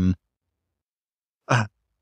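A man's speech breaks off, followed by about a second and a half of dead silence, then a short voiced sound from the same speaker before he talks on.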